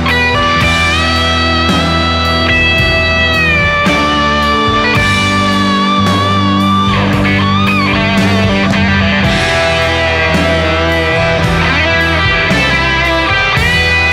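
Live rock band playing an instrumental passage: a Stratocaster electric guitar plays a lead line of long, sustained notes with bends and vibrato, over bass, steady cymbal strokes and drums.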